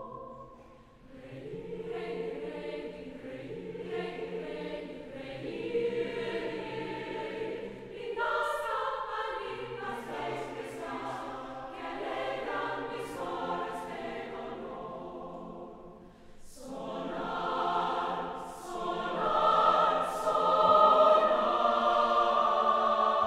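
Mixed choir of women's and men's voices singing a slow, sustained passage, dipping briefly twice and swelling to its loudest in the last few seconds.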